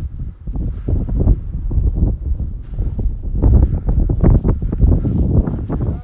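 Wind buffeting the phone's microphone: a loud, gusting low rumble that rises and falls, strongest a little past the middle.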